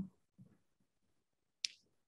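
Mostly quiet, with one short, sharp click about a second and a half in.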